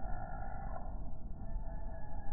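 Slowed-down, pitched-down audio of an outdoor slow-motion recording: a low, steady rumble with short drawn-out moaning tones, about one in the first second. These are the sounds around the hummingbird display, stretched out by the slow motion.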